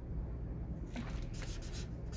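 Marker drawing on chart paper: a series of short, scratchy strokes starting about a second in.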